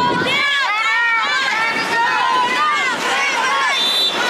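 A group of young marchers' voices shouting and chanting over one another, high-pitched and continuous.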